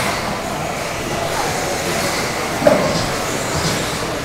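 Electric off-road RC buggies racing on an indoor dirt track: a steady mechanical rush of small motors and tyres echoing in the hall, with one brief sharp louder sound a little over halfway through.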